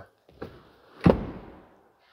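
A single sharp thunk about a second in, fading away over most of a second, with a fainter knock just before it.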